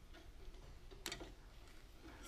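Near-quiet room tone with one short, faint click about a second in.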